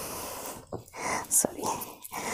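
Soft rustling of cotton saree fabric being handled and unfolded, a few short rustles coming and going.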